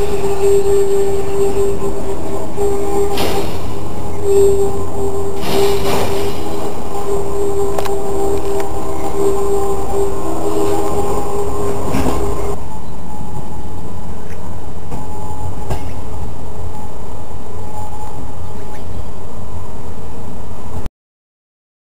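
Train running, with a steady high wheel squeal over a low rumble; the squeal stops about twelve seconds in, leaving the rumble.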